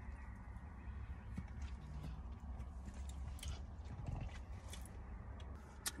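Faint, steady low rumble inside a car, with scattered light clicks and taps.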